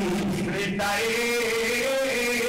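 A man's voice chanting a melodic recitation in long held notes, stepping up in pitch about halfway through.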